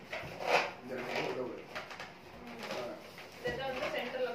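Latex balloons being blown up by mouth: puffs of breath forced into the balloons and squeaky rubber, the loudest puff about half a second in.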